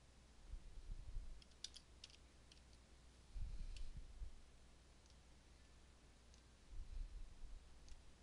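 Faint computer keyboard keystrokes: a quick run of key clicks about two seconds in, then a couple of single clicks later. Three soft, low, muffled thumps come through on the microphone between them.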